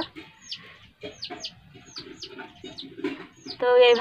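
Chickens peeping: a run of short, high calls, each sliding downward, about three a second.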